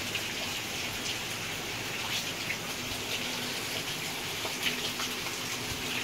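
Heavy rain pouring down, a steady dense hiss with occasional sharper drop ticks close by.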